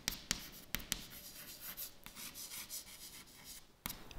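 Chalk writing on a chalkboard: soft scratching strokes with sharp taps as the chalk strikes the board, several taps in the first second and another near the end.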